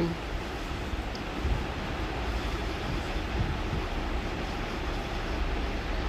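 Steady background noise: an even low rumble with a hiss over it and no distinct events.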